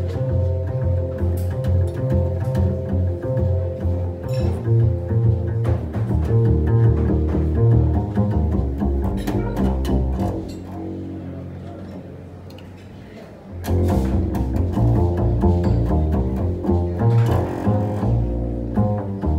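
Live jazz trio music: grand piano and plucked double bass playing an original piece that blends traditional jazz with Armenian folk music. About ten seconds in the playing thins out and grows quieter. A few seconds later both instruments come back in full.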